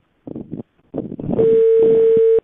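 A steady telephone-line tone starts a little past halfway through and holds for about a second, after two short, broken bits of muffled sound on the call.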